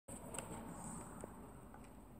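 Faint room tone with a steady high hiss, and a couple of soft clicks.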